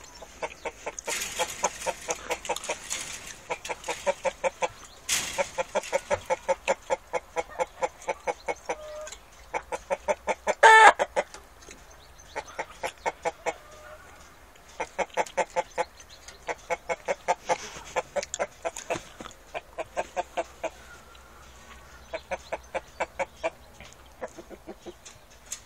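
Chickens clucking in long runs of quick, evenly spaced clucks, several a second, with short pauses between runs. About eleven seconds in, one louder drawn-out call stands out above the clucking.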